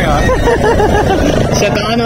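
Several men's voices talking loudly over one another in a crowd, close to the microphone, over a low background rumble.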